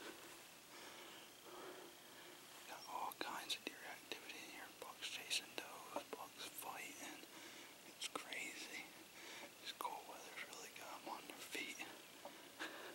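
A man whispering close to the microphone, with small clicks from his lips and mouth between words.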